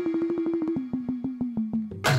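Bhajan accompaniment breaking down to a single held electronic keyboard note that steps down in pitch twice, over a rapid, even run of light percussive taps. The full ensemble comes back in right at the end.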